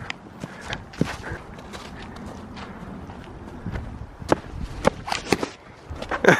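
Footsteps on dry fallen leaves and patchy snow, uneven steps with a few sharper clicks in the last couple of seconds.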